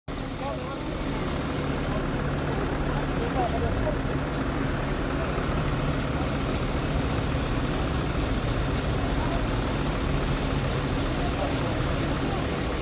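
An engine running steadily, a continuous low hum with a constant pitch.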